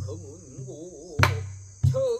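Korean traditional singing (sori) with a wide, regular vibrato, accompanied by a buk barrel drum struck three times: once at the start, hardest a little past the middle, and again near the end.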